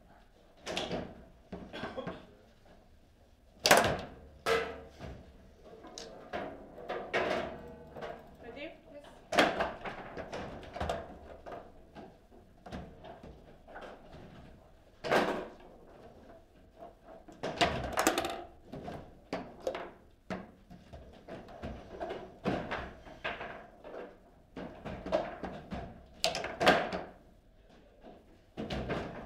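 Table football play: the hard ball knocked about by the plastic figures and striking the table's walls, with the metal rods clacking. It comes as irregular sharp knocks, some much louder than the rest.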